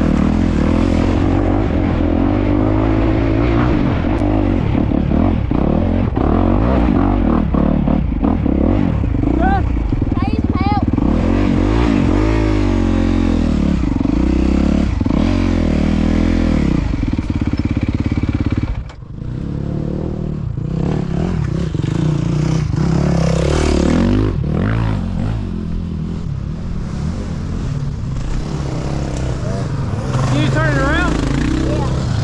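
Dirt bike engine heard from the rider's helmet camera, revving up and down as the bike is ridden along a rough trail. About two-thirds of the way through the sound drops off sharply for a moment as the throttle is shut, then picks back up.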